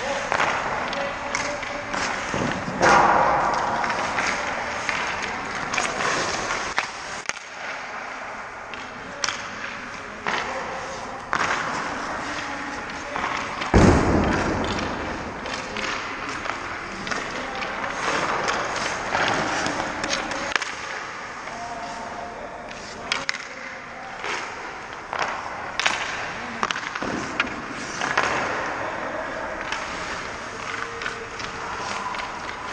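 Ice hockey skate blades scraping and carving on the ice, with sharp clacks and knocks of sticks and pucks in an echoing rink. One loud impact comes about halfway through.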